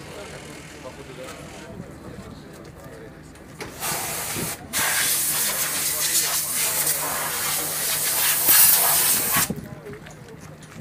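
A pressurised jet hissing loudly: a short burst about four seconds in, a brief break, then about five seconds of continuous hiss that cuts off near the end.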